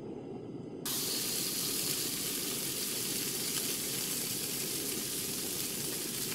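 Frying sizzle of hot oil in a pan. It starts suddenly about a second in over a quieter low rushing, then holds as a steady loud hiss.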